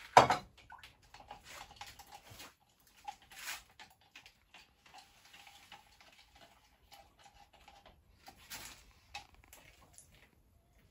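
A sharp knock at the very start, then scattered scraping and light tapping as a stick stirs paint in a small jar.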